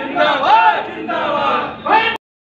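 A crowd of men shouting together at close range, with long drawn-out shouted calls rising and falling in pitch, the loudest about halfway through, typical of slogan-shouting.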